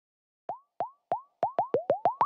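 A run of short electronic 'bloop' bubble-pop sound effects, each a quick rising blip, starting about half a second in and coming faster and faster, about eight in all.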